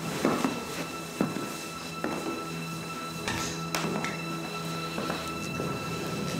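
High-heeled shoes clicking on a hardwood floor in irregular steps, over background music of long held notes.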